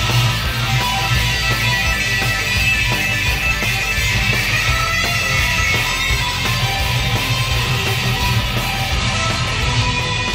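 Electric guitar lead played in fast runs of notes, picked with the fingertips rather than a pick, over a rock backing track with drums and bass.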